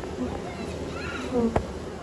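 A large honey bee swarm buzzing steadily at close range as the bees cluster and march into a hive box, with one sharp click about one and a half seconds in.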